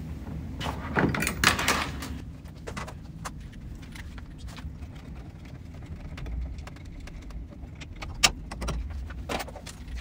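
Handling clatter of kayak stern hardware: knocks and rattles as the NuCanoe EPS electric motor unit is lifted off its stern mount, loudest about a second in, then quieter clicks and fiddling as a rudder bracket is fitted, with one sharp click about eight seconds in.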